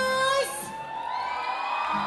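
Audience cheering, many voices overlapping, with one loud held shout in the first half-second.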